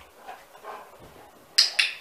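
A Great Dane sniffing twice at a dumbbell on the floor, close by: two short, sharp sniffs about a fifth of a second apart near the end.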